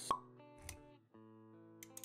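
Intro-animation sound effects over quiet background music: a sharp pop right at the start, then a short soft thud about two-thirds of a second in. The music's held notes drop out briefly near one second and then come back.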